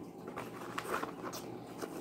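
A cardboard crayon box being handled and opened: a few faint, scattered crackles and light taps of the card and the crayons inside.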